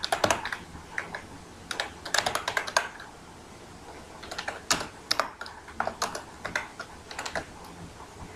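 Typing on a computer keyboard: quick clicking keystrokes in short irregular bursts with brief pauses between them.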